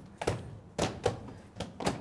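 A few short, sharp taps or knocks, about five in two seconds at uneven spacing.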